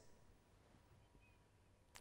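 Near silence: room tone in a pause between sentences of speech.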